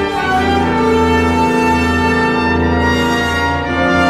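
Symphony orchestra playing: bowed strings under prominent brass, in held chords that change just after the start and again near the end.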